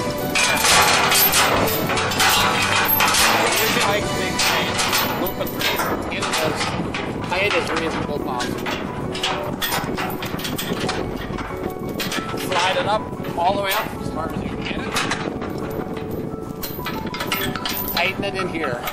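Steel chain clinking and rattling in irregular clanks as it is wrapped and hooked around a steel bin leg by gloved hands, over a steady background hum.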